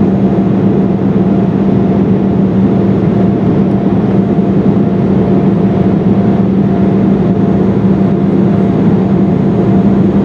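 Steady in-flight cabin noise inside an Embraer E-175, from its GE CF34 turbofan engines and the airflow, with a steady low hum.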